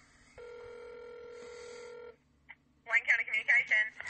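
Telephone ringback tone heard through a phone line: one steady ring of about two seconds, then a click as the call is picked up and a woman's voice answering.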